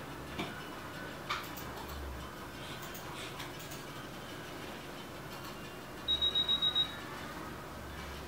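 A quick run of about six short, high-pitched electronic beeps, close together, a little after six seconds in, over a steady background hum with a couple of faint clicks early on.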